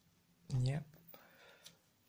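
A soft, quiet voice saying 'yep, yeah' about half a second in, followed by faint breathy sounds and a couple of small clicks.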